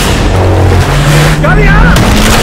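Loud trailer sound mix: a car drives fast under long held low notes of the score, and a shouted call comes near the end.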